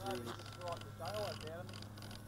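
Faint, indistinct voices of people talking, over a steady low hum.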